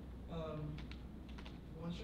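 A handful of quick, light keystrokes on a computer keyboard, with a quiet voice speaking briefly early on.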